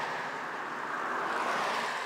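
Two cars overtaking close by in quick succession, their tyre and road noise rushing and swelling as each goes past, with wind on the microphone.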